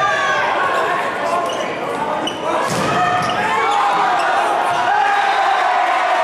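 Volleyball rally in an echoing gymnasium: the ball struck with sharp thuds, the clearest about three seconds in, under continuous shouting from players and spectators.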